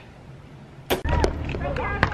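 Quiet room tone, then a sharp click just before a second in, followed by outdoor background with a steady low rumble and faint voices.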